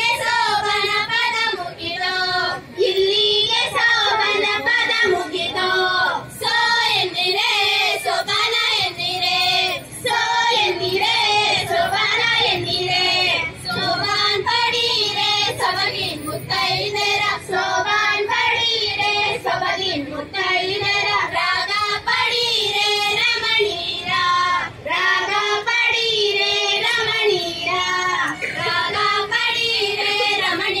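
Women singing a Kannada folk song into stage microphones: a high-pitched, ornamented melody sung in long phrases with short breaks between them.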